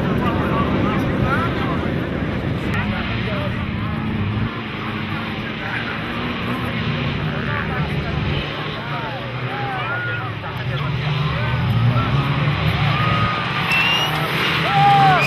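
Engines of several off-road race trucks running across a dirt track, a steady drone with one engine revving up near the end, and people's voices in the background.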